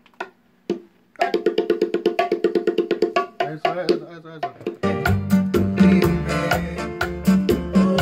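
Bachata music from a studio band. After about a second of quiet with a few clicks, a fast run of short picked notes begins. About five seconds in, bass and percussion come in under it.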